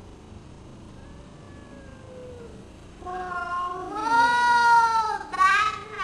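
A rubber balloon squealing as air is let out through its stretched neck: quiet for about three seconds, then a loud, wavering, high squeal held for about a second and a half, followed by shorter squeals near the end.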